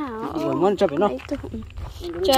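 Speech: a voice talking with strongly rising and falling pitch, then a low rumble near the end.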